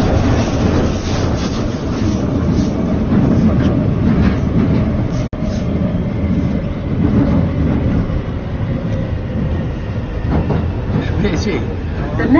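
London Underground train in motion, heard from inside the carriage: a loud, steady rumble of wheels on rail with a faint motor whine that fades in the second half. There is a very brief drop-out about five seconds in.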